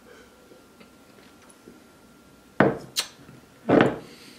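A glass beer glass set down on a wooden tabletop: two sharp knocks about two and a half and three seconds in. A louder, slightly longer sound follows near the end.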